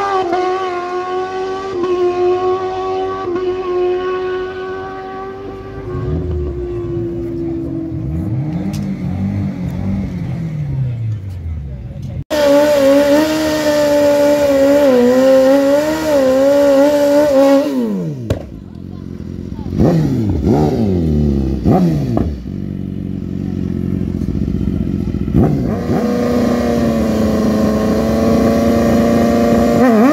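Sportbike engines at a drag strip. First a bike's engine is heard far down the track, its pitch dropping as it fades and slows. After a sudden cut, a sportbike engine is held at high revs for a burnout, blips through several quick revs, then holds a steady raised idle at the start line.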